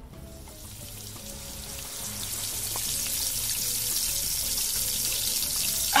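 A sizzling sound effect, a steady hiss that slowly grows louder, as if skin were frying in the sun, over faint background music.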